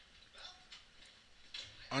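A few faint, scattered computer mouse clicks, with a man's voice starting at the very end.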